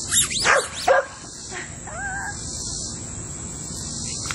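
Beagle puppy giving three sharp yips in quick succession in the first second, then a faint, thin, wavering whine about two seconds in.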